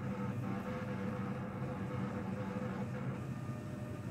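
Criterion II urine chemistry analyzer running, its built-in printer feeding out a result slip with a steady hum.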